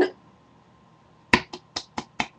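A quick run of sharp clicks, about four or five a second, starting a little over a second in; the first is the loudest.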